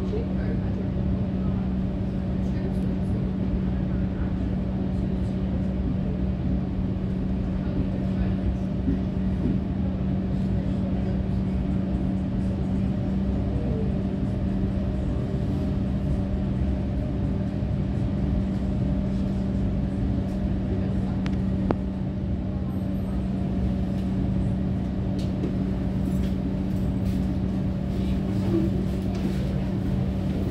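Interior of an EDI Comeng electric suburban train on the move: steady running noise under a constant low hum that holds one pitch throughout, with a single sharp click about three-quarters of the way through.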